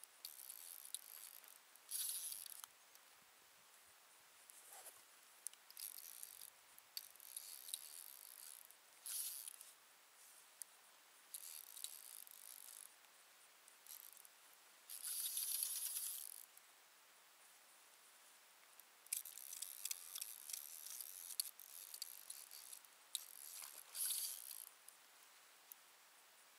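A fishing reel working in short bursts of fine, high-pitched ticking, about eight of them, while the bent rod plays a hooked fish.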